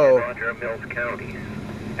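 Speech only: a man's voice trails off at the very start, then a quieter, thin-sounding weather radio broadcast voice talks over a steady background hiss.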